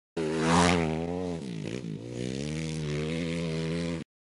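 Dirt bike engine revving hard, its pitch dipping and climbing back about halfway through as it shifts gear, then running steady until it cuts off suddenly at the end.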